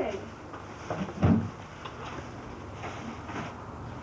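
Faint voices in the background with a few short knocks, the loudest a little over a second in.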